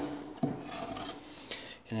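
A split firewood log scraping and sliding over the ash bed and metal floor of a wood stove's firebox as it pushes the ash back.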